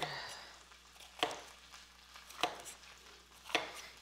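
Chef's knife chopping through a yellow bell pepper onto a plastic cutting board, with three sharp knife strikes about a second apart.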